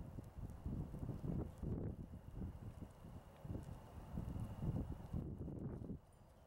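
Irregular low rumbling and bumping on the camera's microphone, with a faint steady high whine underneath.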